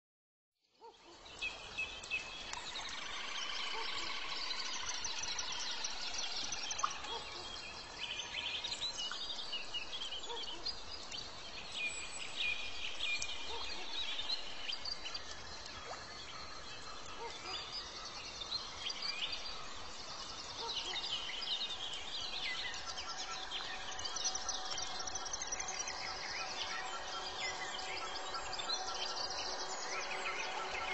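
Many birds chirping and calling together, a dense high-pitched chorus of overlapping calls over a steady background hiss, fading in about a second in.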